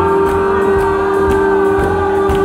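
Live soul band playing: one long held note rings steadily over the drums and bass, with light cymbal ticks.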